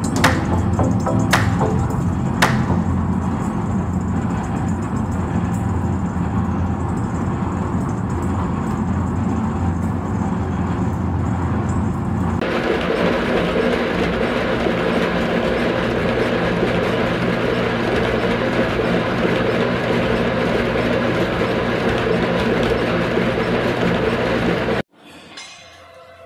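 Industrial twin-shaft shredder running, its toothed cutter discs crushing hollow metal balls, with a few sharp cracks in the first seconds, over background music. About halfway through the sound changes abruptly, with less deep rumble and more mid-range grinding.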